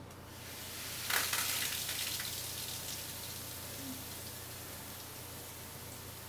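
Dry chemicals fizzing as they hit a beaker of water: a hiss that builds, jumps about a second in and then slowly dies down. The bubbling is an endothermic reaction of the kind in a fizzing bath product, turning the water cold.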